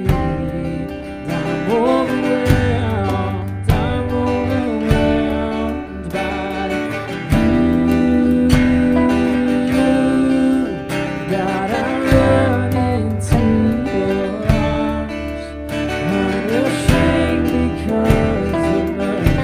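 Live worship band playing a song: strummed acoustic guitar and drum kit, with a singer's vocals over them.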